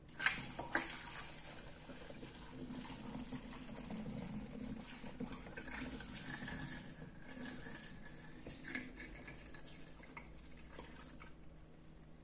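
Homemade liquid laundry detergent being poured through a plastic funnel into a glass bottle: a faint, steady pour as the bottle fills, with a light knock just after the start.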